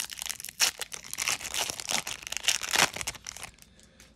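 Foil wrapper of a Double Masters booster pack crinkling as it is torn open, in irregular crackles that die down near the end.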